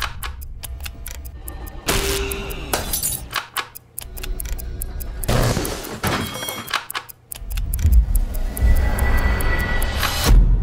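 Suspenseful trailer score and sound design: sharp clicks and sudden loud hits over low rumbling, dropping almost out twice, then a low rumble building toward the end.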